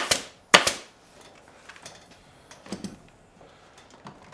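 Pneumatic staple gun firing twice, about half a second apart, each a sharp double snap as it drives a staple through webbing into the wooden seat frame. Then soft handling and small clicks as the webbing and tools are moved.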